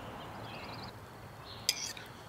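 A fork clinks once, sharply, against a small stainless steel mixing bowl near the end, while scrambled egg is emptied from the bowl.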